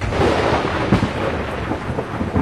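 Thousands of drums beaten at once in Holy Week massed drumming. They make a dense, unbroken roll that starts suddenly, a continuous rumble with no separate beats.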